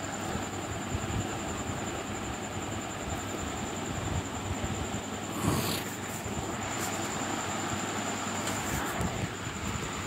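Steady background hum and hiss with a faint high-pitched whine, broken by a short rustle about five and a half seconds in.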